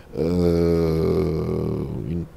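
A man's voice holding a long, steady, low hesitation sound, a drawn-out "euhhh" between words, for about two seconds.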